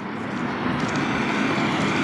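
A passing vehicle's steady rushing noise, growing gradually louder as it approaches.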